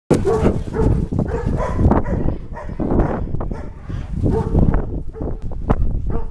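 Dogs playing close together, giving short, repeated yelping calls over dense low scuffling noise.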